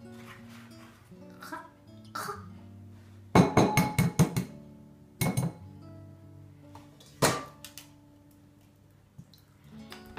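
Background music with plucked guitar throughout, and sharp clicks of eggs being tapped and cracked against a bowl: a quick run of taps a little after three seconds in, then two single knocks.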